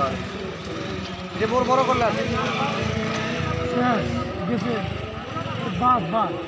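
A small commuter motorcycle's engine running at low revs as it is ridden slowly through tight turns, with men's voices talking and calling over it.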